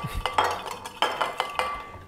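A metal utensil clinking against a glass bowl: a run of irregular sharp clinks, several leaving a brief ringing tone.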